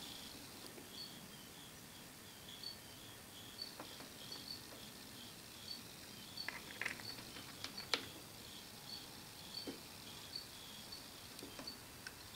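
Quiet workshop with a few small, sharp metal clicks and ticks as the jaw screws of a four-jaw lathe chuck are turned with chuck keys; the sharpest comes about eight seconds in. A faint high chirp repeats a few times a second throughout.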